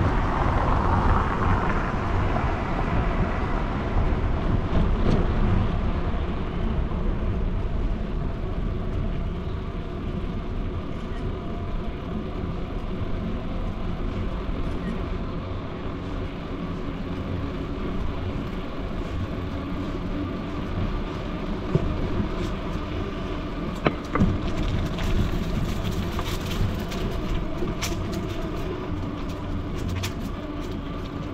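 Urban street ambience: a vehicle going by in the first few seconds, louder then easing off, followed by a steady lower traffic hum with a few faint clicks near the end.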